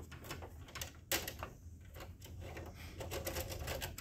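Plastic clicks and light rattling as a paper pickup/separation roller assembly is slid along its shaft and lifted out of an HP M607 laser printer, with one sharper click about a second in.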